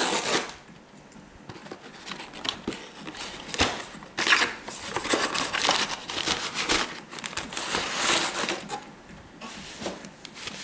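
Cardboard shipping box being handled and opened: flaps and sides rustling and scraping in irregular bursts as hands dig into the packing and slide out a flat cardboard mailer. A loud burst of rustling comes right at the start and the loudest scrape about four seconds in.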